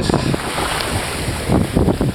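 Wind buffeting the microphone over the wash of small surf on the shoreline, with seawater running up the sand near the end.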